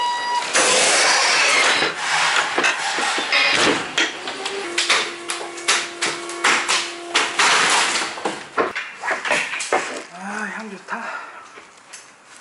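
A forklift loading pallets into a truck's cargo bed: a rush of noise at first, then a run of knocks and clatters, with a steady hum for a few seconds in the middle. A muffled voice comes in near the end.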